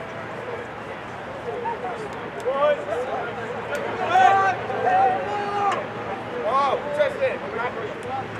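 Voices shouting and calling out across an outdoor lacrosse field, loudest about halfway through, over a steady background hum. A few short clicks come in the first half.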